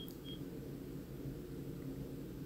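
Two short high beeps about a third of a second apart, over a faint steady low hum.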